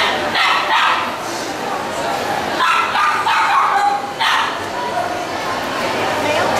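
Small dogs yapping in several short bursts, over the chatter of people talking.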